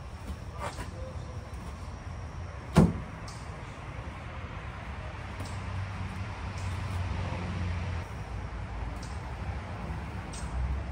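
Knocks and light clicks from someone working inside a car's cabin, over a low rumble, with one sharp knock about three seconds in, the loudest sound.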